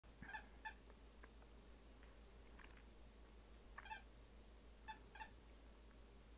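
Mostly quiet, with a handful of faint, short squeaks as a puppy rolls about wrestling a plush chew toy.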